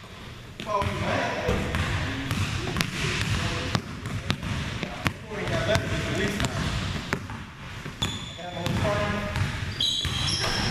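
A basketball being dribbled on a gym's hardwood floor, in uneven bounces about one to two a second, with brief sneaker squeaks near the end and voices in the background.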